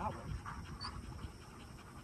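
A retriever panting.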